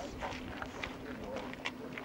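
Indistinct voices of people talking in the background, with a couple of sharp clicks.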